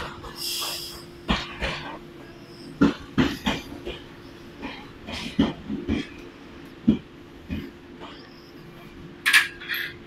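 Jōshin Electric Railway electric train creeping past the platform on a shunting move: a steady hum with an irregular run of sharp clacks and knocks from the wheels over rail joints and points, a brighter cluster near the end.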